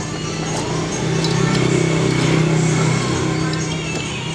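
Background music with a passing motor vehicle's engine hum, swelling to its loudest about two seconds in and then fading.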